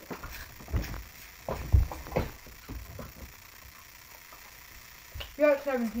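A few light knocks and thuds of a water bottle landing on a tabletop in the first half, then a voice near the end.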